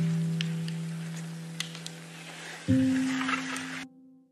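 Background music of plucked, guitar-like chords that ring and slowly fade. A new chord comes in about two-thirds of the way through, then the music cuts off abruptly just before the end. A few faint clicks sit under it.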